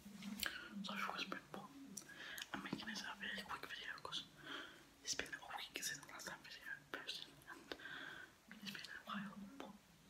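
A young man talking in a whisper, close to the microphone, with only a little voice showing through.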